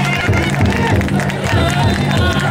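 Large taiko drum inside a Kanonji chousa drum float (taikodai) beating a steady rhythm, about three beats a second, under the massed shouting and chanting of the bearers carrying it.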